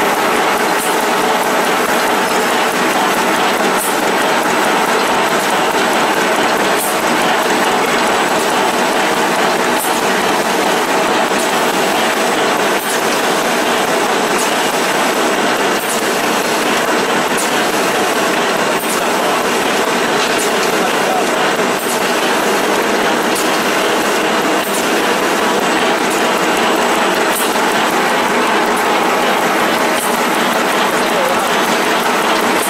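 A CDH-210F-2 handkerchief tissue paper machine line running: a loud, steady, dense mechanical clatter from its rollers and folding and cutting gear, with occasional sharp clicks.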